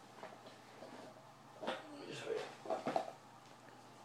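A man's voice making a few short, wordless sounds in the second half.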